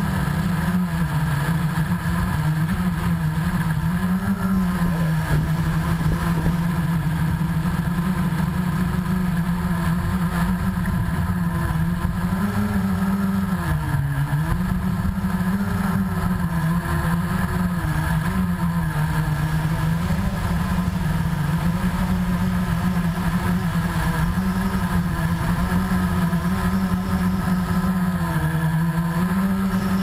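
Blade 350QX quadcopter's four brushless motors and propellers humming steadily in flight, the pitch wavering up and down as the motors change speed, over a low rumble.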